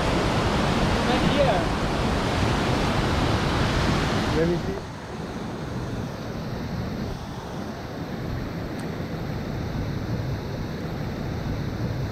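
Rushing water of a fast stream and a nearby waterfall, a loud, steady noise. About four and a half seconds in, it turns suddenly quieter and more muffled.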